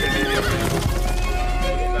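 A horse whinnies during the first second, with galloping hoofbeats, over background film music.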